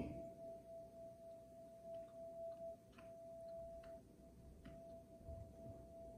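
A single bell tone ringing on at one steady pitch and slowly fading, a pure tone with no overtones, with a few faint soft ticks behind it.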